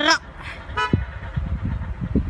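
An approaching Arriva passenger train sounds a short horn toot about half a second in, followed by low rumbling.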